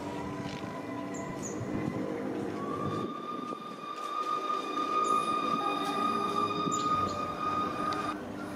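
Steam locomotive approaching slowly. From about three seconds in, a single steady high tone is held for about five seconds.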